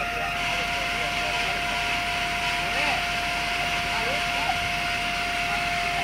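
Hitachi amphibious excavator running steadily, a constant engine noise with a high, unchanging whine.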